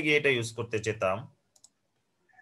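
A voice speaking for just over a second, then near quiet with a couple of faint computer keyboard clicks as code is typed.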